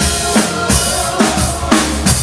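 Song with a steady drum-kit beat of bass drum and snare under bass and other pitched instruments.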